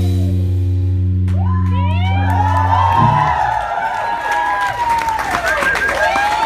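A live band's final chord held and ringing out for about three seconds, then the audience whooping, cheering and clapping at the end of the song.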